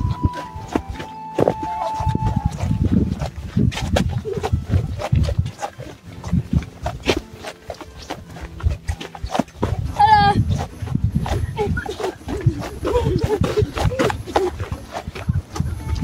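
Footsteps crunching on a dry dirt and gravel trail, with irregular low rumbling on the microphone. About ten seconds in there is a brief, high, wavering vocal sound.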